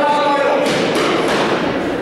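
Voices shouting and calling around a boxing ring, with a quick run of sharp thuds in the middle.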